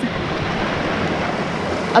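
Brook rushing steadily over rocks, an even unbroken rush of water.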